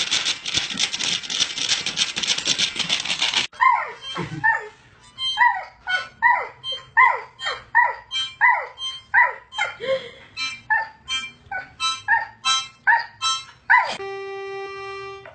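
For about the first three and a half seconds, a dog paws a toy xylophone, making a dense clatter. After that, a dog gives a long run of short yips that fall in pitch, about two to three a second, singing along to a harmonica.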